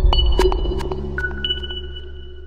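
Electronic logo jingle: single bright synthesized pings that ring on, one near the start and two more after about a second, over a deep bass tone that slowly fades.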